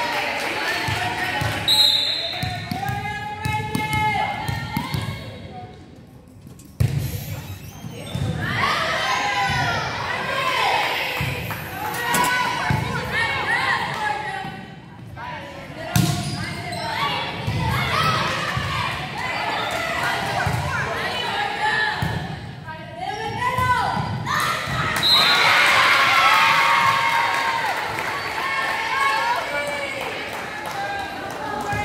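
Volleyball play on a gym floor: sharp hits of the ball, the loudest about seven and sixteen seconds in, among players' and spectators' shouts and calls, echoing in the large hall.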